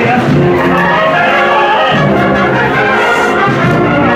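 Brass band playing a Holy Week processional march, sustained brass chords at a steady, loud level.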